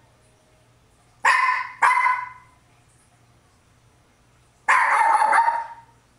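A poodle barking: two quick barks a little after a second in, then a longer, drawn-out bark near the end.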